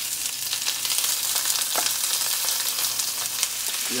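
Chopped peppers, onions and celery frying in hot oil in a large cast iron pan: a steady, crackling sizzle.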